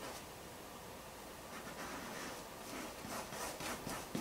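Faint, soft swishes of a paintbrush stroking paint onto a stretched canvas, several short strokes, more of them in the second half.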